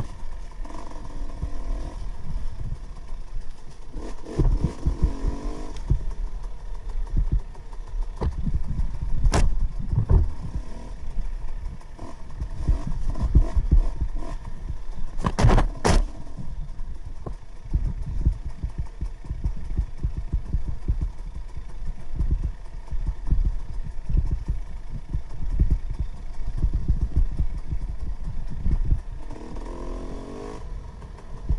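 KTM 300 XC-W two-stroke single-cylinder dirt bike riding a rough trail, its engine note rising and falling under heavy wind buffeting and the clatter of the bike over rocks and roots. Sharp knocks come about nine seconds in and twice close together around sixteen seconds in.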